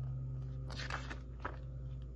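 Picture book being handled, its paper pages giving a few brief rustles and clicks around the middle, over a steady low hum.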